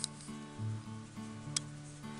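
Soft background music with sustained held notes, and a single sharp click about one and a half seconds in.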